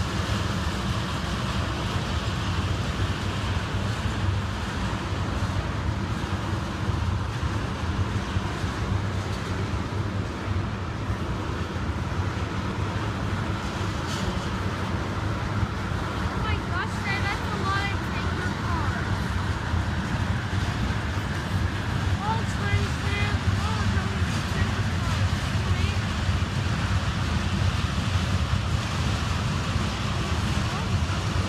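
CSX freight train of tank cars rolling past at close range: a steady noise of steel wheels running on the rails.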